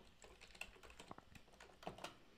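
Faint typing on a computer keyboard: a quick run of key presses, with one louder keystroke near the end.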